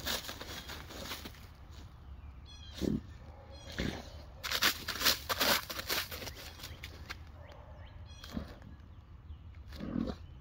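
A Weimaraner sniffing hard with its nose pushed into a hole in the snowy ground, in short noisy bursts of breath, several bunched together in the middle and one more near the end.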